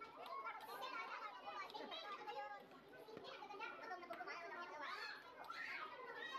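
Faint background chatter of many voices in a busy restaurant, children's voices among them.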